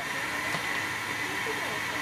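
Steady hiss of escaping steam from a W.G. Bagnall saddle-tank steam locomotive standing in steam at the platform.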